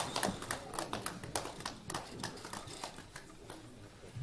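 A rapid, irregular patter of sharp clicks or claps, dense at first and thinning out toward the end.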